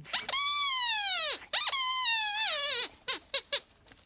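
Sweep's squeaky puppet voice: two long squeaks that fall in pitch, then a few short squeaks near the end.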